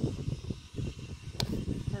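Camera handling noise from a hand-held selfie stick: irregular low rustling and knocking as it is moved, with one sharp click about one and a half seconds in.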